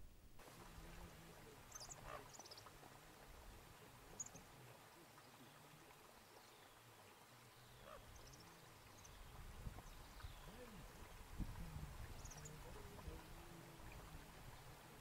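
Faint, brief high-pitched bird chirps and short falling whistles, scattered every second or two, over a faint low rumble.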